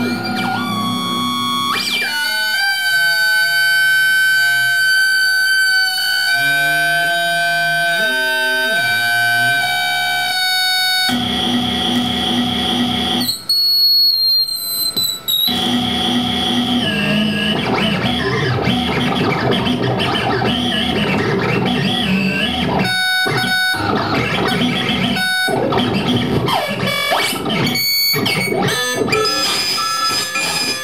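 Live electronic noise music from a table of analog and electronic sound devices and effects units. It starts with held electronic tones whose pitch wobbles, then turns into a dense, distorted noise texture with high whistling tones that fall in pitch midway, and it cuts out abruptly several times near the end.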